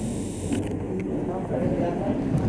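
A man speaking French into a handheld microphone, amplified for an audience. A faint high hiss stops about half a second in.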